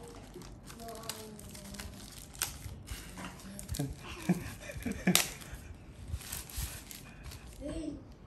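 Paper wrapping rustling and crinkling as a drone battery is slid out of its paper sleeve, with scattered small clicks and taps of handled plastic parts.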